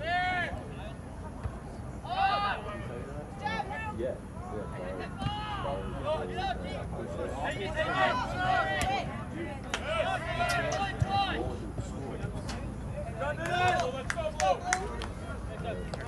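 Shouting voices carrying across an outdoor soccer field, many short calls over background crowd chatter.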